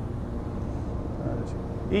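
A steady low mechanical rumble of running machinery with no distinct events, under outdoor background noise.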